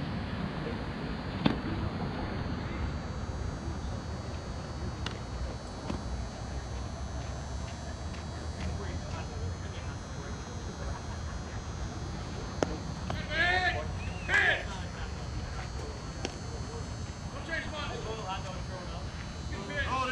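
Outdoor ballfield ambience: a steady low rumble with two sharp knocks, one early and one about two-thirds through. Just after the second knock come a couple of short, high-pitched shouts from players, with fainter calls later.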